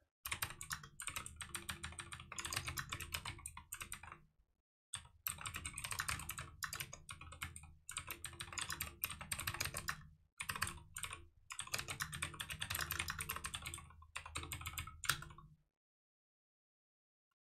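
Computer keyboard typing: fast runs of keystrokes broken by short pauses, with one sharper key strike near the end before it stops.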